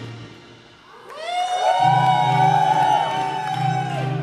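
Live band music thins out to a short lull, then a choir-like swell of many overlapping held tones comes in about a second in, with a low drone joining underneath; the held tones cut off together near the end.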